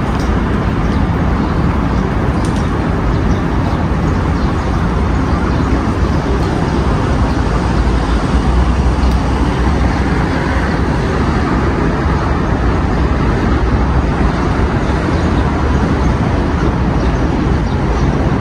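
Steady, loud outdoor rumble and hiss with no let-up, heaviest in the low end.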